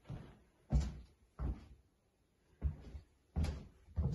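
Footsteps climbing carpeted stairs: four dull thumps, a little uneven in spacing, with a pause in the middle.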